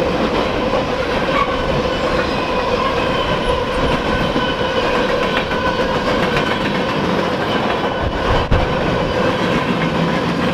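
Freight cars of a passing CSX train rolling by close at speed: a steady rumble of steel wheels on rail with clicking over the rail joints and a faint steady ringing tone. One sharp bang stands out about eight and a half seconds in.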